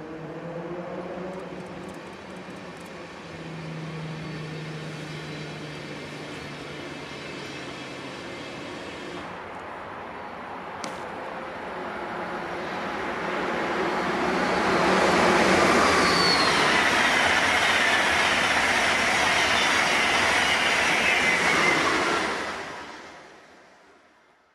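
A train running past, starting as a low steady hum and swelling about fifteen seconds in to a loud rush of wheels and air, with whining tones that fall in pitch as it goes by; the sound drops away quickly near the end.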